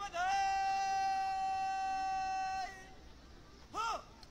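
A man shouting a drill command across a parade ground: one long drawn-out held call, then a short sharp call near the end, as in a preparatory word followed by the word of execution.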